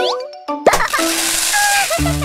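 Cartoon sound effects: a quick rising whistle-like glide, then about two-thirds of a second in a sudden loud rushing, splashing burst that lasts over a second as a shower of small plastic balls spills out, over children's background music.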